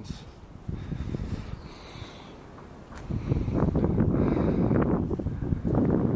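Wind buffeting the microphone, a gusty low rumble that is fairly light at first and grows much stronger about halfway through.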